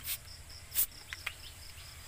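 Trigger spray bottle spritzing water onto a rubber tree stem girdled for marcotting: two short hissing squirts, one at the start and a louder one just under a second in. An insect chirps steadily in the background, about four chirps a second.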